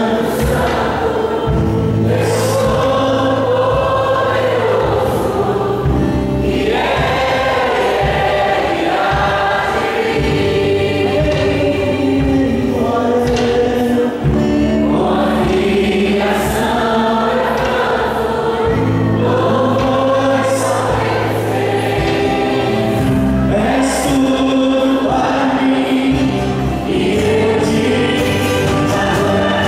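A live church worship band playing a song: several voices singing together over guitars, keyboard and drums, with cymbal crashes every few seconds.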